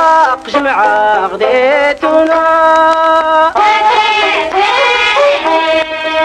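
Traditional Amazigh rways song from the Souss: a sung Tashelhit melody with ribab fiddle accompaniment. The first couple of seconds are quick ornamented pitch slides, then the melody settles into long held notes.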